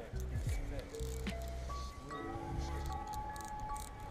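Background music with held notes over a low bass line that changes note every half second or so.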